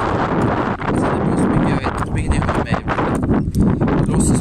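Strong wind buffeting the phone's microphone: a loud, steady low rumble with scattered short knocks.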